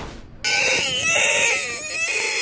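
A man's high-pitched, wavering wail or scream that starts about half a second in and carries on, the pitch sliding up and down.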